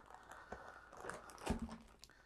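Faint crinkling of a plastic zip-top bag as cooked rice and quinoa are poured out onto a metal freeze-dryer tray, with a soft knock about one and a half seconds in as the bag is set down.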